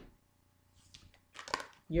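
A card being picked up and handled: a knock at the very start, then a few quick taps and a rustle about a second and a half in.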